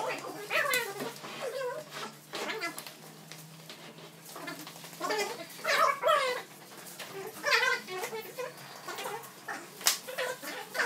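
Wooden feet of a heavy rosewood platform bed squeaking against a ceramic tile floor as it is shoved into place, in several short squeals that bend in pitch.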